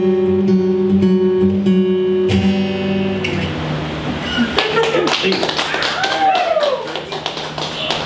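Acoustic guitar strummed and played through a PA, its chords ringing steadily until they stop about three seconds in. Then people's voices and a few scattered taps follow.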